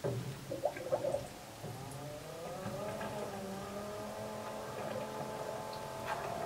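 Bilge pump starting up in a tank of hot water, pushing water into garden hose: a few short gurgles, then from about two seconds in a steady motor whine that rises slightly in pitch and then holds.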